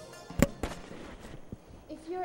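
A single sharp bang about half a second in, with a fainter knock just after it, then quiet.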